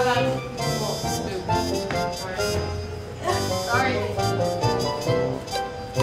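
Music: a song with a singing voice over instrumental accompaniment.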